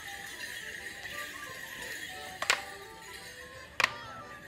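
Morris dance music playing, with two sharp clacks of wooden morris sticks striking together: one about two and a half seconds in and one near the end.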